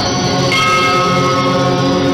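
Opening theme music of sustained, layered tones; a higher ringing tone comes in about half a second in.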